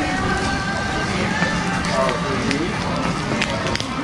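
Shop ambience of indistinct background voices over the low rumble of footsteps and handling noise from a camera carried while walking, with a few light clicks near the end.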